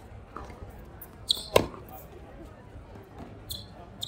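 Tennis rally: a tennis ball bouncing and being struck by a racket, with two sharp hits in quick succession about a second and a half in as the loudest sounds, and fainter shots from the far end of the court.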